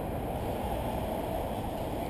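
Steady, muffled rumble of wind noise on the camera's microphone, with no distinct events standing out.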